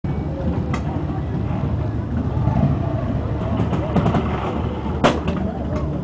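Harley-Davidson WLA's 45 cubic-inch flathead V-twin engine running at a low, steady idle, with one sharp crack about five seconds in.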